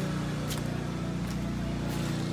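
Portable generator engine running steadily, a continuous low hum, with two faint clicks.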